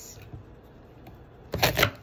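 Knife cutting through a small, ripe watermelon. Quiet at first, then about one and a half seconds in comes a quick run of crisp cracks as the blade splits the crisp rind and flesh.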